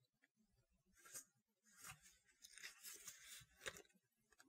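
Faint rustling of paper as the pages of a small card guidebook are turned, in several short bursts.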